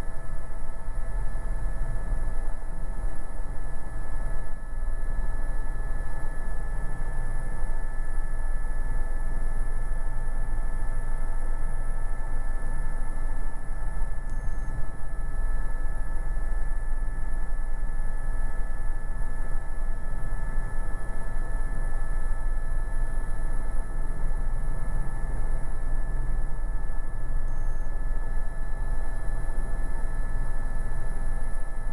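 Airbus EC130 helicopter in a steady hover, heard from inside the cockpit: a constant low rotor rumble with several steady whining tones from its Safran Arriel 2 turboshaft engine and drivetrain, unchanging throughout.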